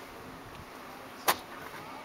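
Faint steady outdoor background hum, with one sharp click a little past halfway through.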